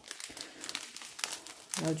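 Clear plastic pouch strip of diamond-painting drills crinkling as it is handled and turned in the hands, in irregular crackles.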